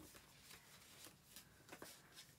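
Faint rustling and a few light ticks of paper letters and cards being handled, otherwise near silence.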